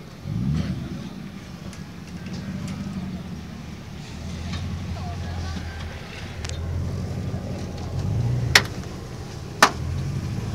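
Engine of a roll-caged BMW E36 slalom car idling, with a brief rev about half a second in and a few light blips later on. Two sharp knocks near the end.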